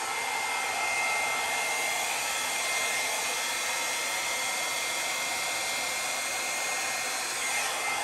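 Small hair dryer running steadily, a rush of air with a thin high whine, held over wet acrylic paint to blow it across the canvas in a Dutch pour.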